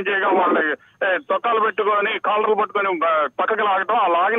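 Speech only: a correspondent's live phone report, a voice talking without pause, thin and narrow in tone as heard down a telephone line.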